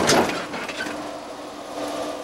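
A car's engine running at low speed as it rolls slowly forward towing a boat trailer. It is a steady hum, loudest just at the start.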